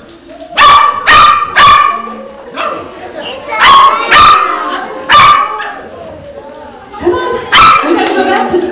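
Poodle barking: about seven short, high-pitched barks in clusters, three in quick succession, then two, then a single bark, and one more near the end.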